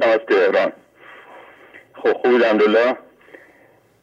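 Speech: short spoken phrases on a phone-in broadcast, with a faint hiss from an open telephone line between them.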